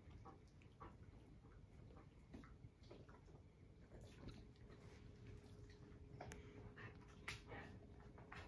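Small dog grooming a tabby cat at close range: faint, irregular wet licks and nibbling clicks, busier and a little louder in the second half.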